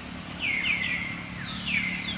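A bird calling: a quick run of three falling, whistled chirps about half a second in, then two more near the end.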